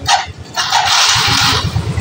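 Yamaha Mio J single-cylinder scooter engine, converted from fuel injection to a carburettor, starting up and catching about a second in, then running with a steady low rhythmic pulse at idle.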